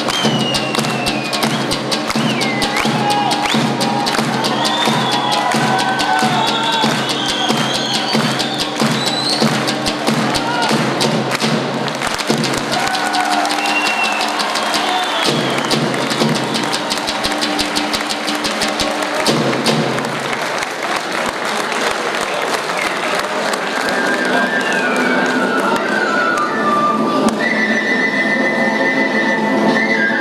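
Albanian folk dance music: a large double-headed tupan (lodra) drum beaten in a fast, driving rhythm under a high wandering melody. The drumming thins out about two-thirds of the way through, leaving the melody with steadier held notes near the end.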